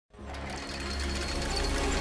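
The opening of an electronic intro track swells in from silence, with a low drone and a fast mechanical whirring-clicking sound effect like turning gears.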